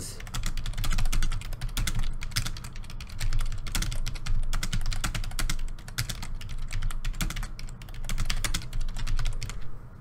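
Computer keyboard typing: a fast, irregular run of keystrokes that stops just before the end.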